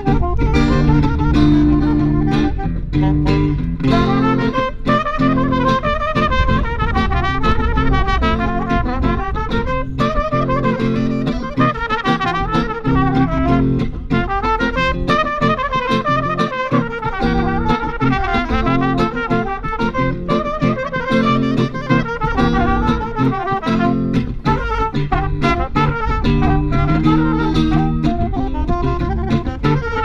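Live instrumental music from a trumpet, saxophone and electric guitar trio, amplified through PA speakers, with the horns playing winding melody lines over the guitar.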